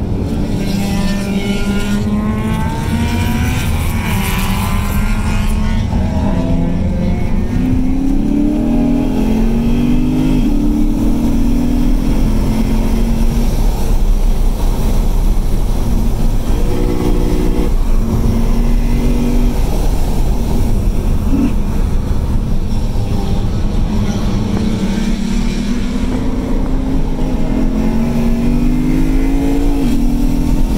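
Stock Lexus RC F's 5.0-litre V8 heard from inside the cabin while lapping a track at speed, its pitch climbing several times under hard acceleration and dropping back between pulls, over steady road noise.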